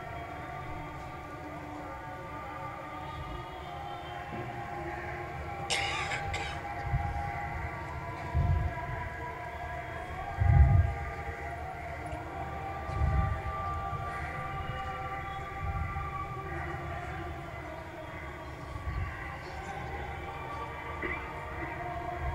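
Soft, sustained keyboard chords, held tones shifting slowly from one chord to the next. A few dull low thumps come about eight, ten and a half and thirteen seconds in, the middle one the loudest.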